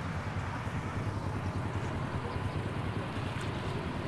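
Honda Wave S 110's single-cylinder four-stroke engine idling steadily, warm and smooth.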